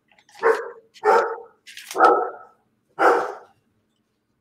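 A dog barking four times, about a second apart.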